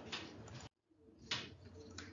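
Pause in a lecture narration: faint room noise with two short breaths, one just after the start and one about 1.3 s in, broken by a brief dropout to total silence about three-quarters of a second in.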